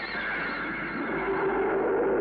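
Eerie horror-film score effect: a high, held chord of several tones that starts to waver and slides slowly down in pitch. A lower tone swells in during the second half.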